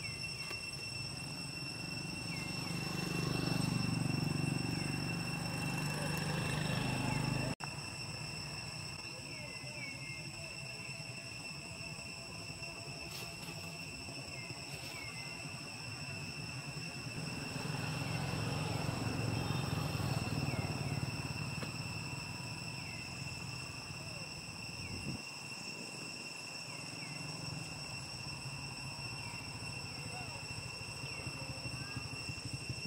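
Steady high pitched drone of insects, cicadas or crickets, holding several unchanging tones, with faint short chirps repeating. A low rumble swells up and fades twice, about two seconds in and again past the middle.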